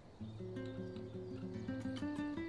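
Quiet background score: a light melody of short plucked-string notes that starts just after the beginning.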